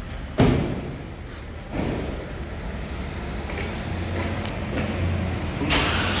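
A single loud bang about half a second in that rings on in the concrete parking garage, then a lighter knock just under two seconds in. A steady low engine hum grows louder toward the end.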